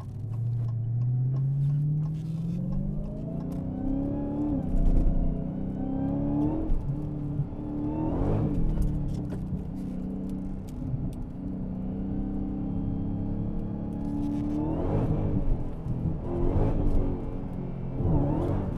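Supercharged V8 of an 800-horsepower Dodge Challenger, heard from inside the cabin, accelerating hard on a wet track with all electronic aids off. The engine note climbs steeply and falls back at gear changes about four and a half and six and a half seconds in, then pulls up again, with a few brief louder bursts later on.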